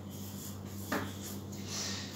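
Felt-tip marker writing on a whiteboard: a few short, faint scratching strokes about a second in and again near the end, over a faint steady low hum.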